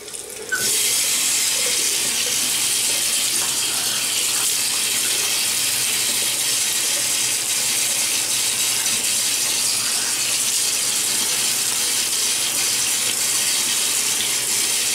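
Bathroom tap running steadily into a sink, turned on about half a second in, as water is scooped up by hand to wet a face.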